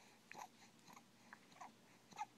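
A seven-week-old baby making faint mouth noises: four or so short smacks and squeaks, roughly half a second apart.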